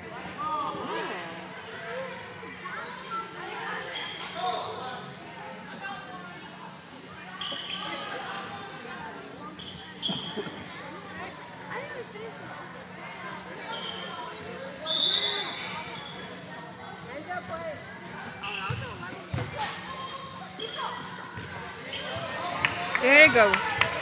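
Basketball game in a gym: a ball dribbling and bouncing on the hardwood court, short high sneaker squeaks and spectators' chatter echoing in the hall. Near the end a spectator shouts loudly, cheering a player on.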